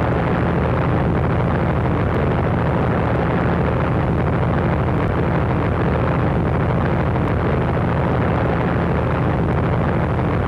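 Propeller airplane engine droning steadily, a dense low rumble at an even level with no breaks or changes, dulled in the highs as on an old film soundtrack.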